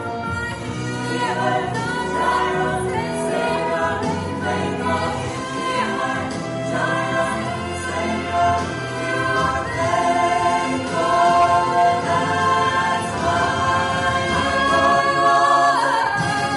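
Mixed vocal ensemble of men and women singing a gospel worship song together into microphones, growing a little louder in the second half.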